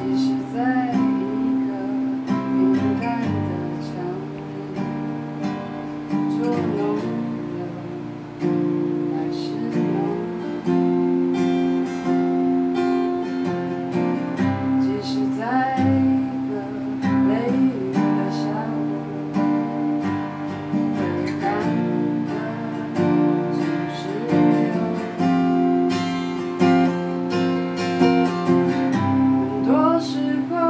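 Steel-string acoustic guitar strummed steadily, its chords changing every couple of seconds.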